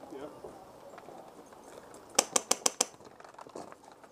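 An airsoft gun firing a quick string of about five sharp shots, evenly spaced, in just over half a second, a little past the middle.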